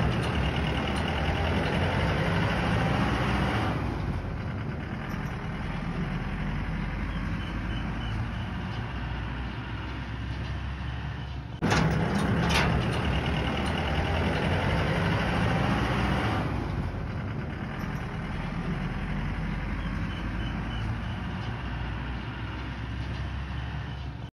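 A motor vehicle running steadily at road speed, with tyre and road noise, as a farm trailer rolls by. Two sharp clicks come about halfway through, and after them the sound is louder for a few seconds.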